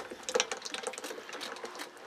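Wild honeycomb being squeezed by hand over a large aluminium pot: quick, irregular wet crackling and clicking as the wax comb breaks and honey and comb bits drip into the pot.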